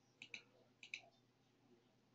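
Computer mouse button clicking faintly: two pairs of quick clicks, about half a second apart.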